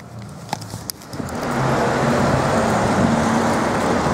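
City street traffic: a steady rush of road vehicles, buses and cars, that swells up about a second in and holds, with a faint low engine hum in it.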